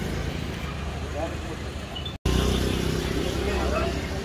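Street background of low, steady traffic rumble with faint voices of men talking. A little over two seconds in there is an abrupt cut, and the rumble comes back louder.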